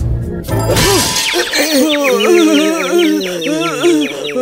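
Cartoon sound effects over background music: a sudden shattering crash about half a second in, then a long warbling, wavering sound with quick rising chirps, as for a blow to the head.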